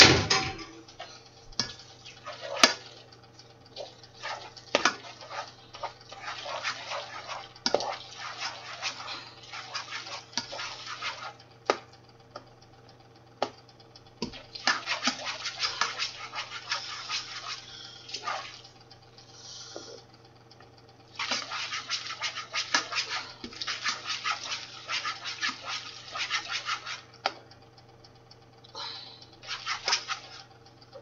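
Black slotted spoon stirring and scraping drained macaroni in a saucepan, in several stretches of scratchy stirring a few seconds long, with sharp clicks and knocks of the spoon against the pot.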